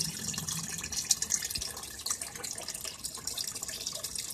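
Aquarium filter's return water pouring and splashing steadily into the water of a washing-machine-tub fish tank, a continuous trickling splash.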